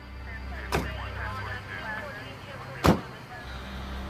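Low, steady rumble of an idling vehicle, with two sharp knocks: one just under a second in and a louder one about three seconds in.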